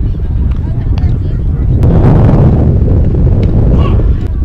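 Wind buffeting the camera microphone, a loud low rumble that swells toward the middle, with faint voices of players and spectators behind it.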